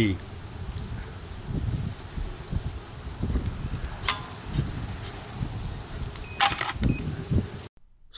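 Wind rumbling on the microphone, with a few light clicks from the BMK B2 remote and the timer unit, and a short whirring buzz about six and a half seconds in, as the timer's servo arm moves to cancel the DT.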